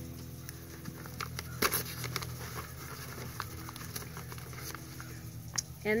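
Stiff brown paper bag being handled and pressed by hand: a few scattered sharp crinkles and taps over a steady low hum.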